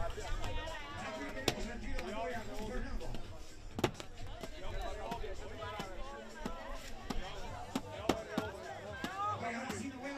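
Coconuts struck against a concrete ground to crack them open: a series of sharp, hard knocks, the loudest about four seconds in, over crowd voices.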